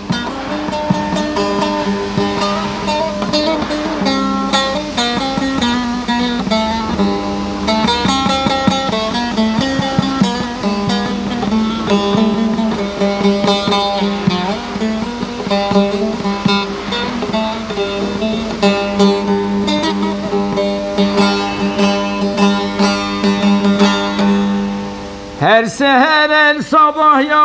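Bağlama (Turkish long-necked saz) picked in an instrumental opening to an uzun hava: a quick run of melody notes over a steady ringing drone.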